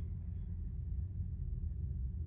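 Room tone: a steady low rumble with no other distinct sound.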